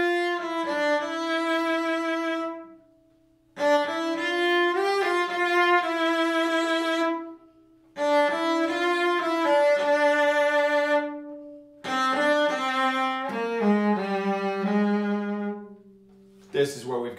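A solo cello, bowed, plays four short melodic phrases with brief pauses between them. The last phrase settles onto a lower note.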